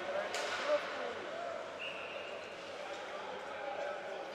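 Ice hockey arena ambience: a crowd murmuring and calling out, with one sharp crack of puck or stick against the boards or ice near the start. A short high-pitched tone sounds about two seconds in.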